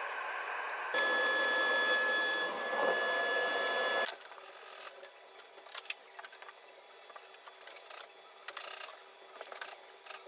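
A woodworking machine runs loudly with a high steady whine for about three seconds, then cuts off suddenly. After that come light clicks and taps of hand work on wood panels while glue is rolled on.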